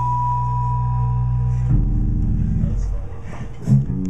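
A small rock band plays the closing bars of a song. Low held electric bass notes sound under a high steady tone. The chord changes a little under two seconds in, and a last loud accent comes near the end.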